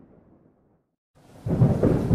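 Thunderstorm: a low thunder rumble fades away into silence, then about a second and a half in, loud thunder breaks in with the hiss of rain.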